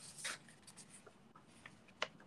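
Faint rustle of origami paper being handled and folded, a brief rustle about a quarter second in, then a few soft ticks.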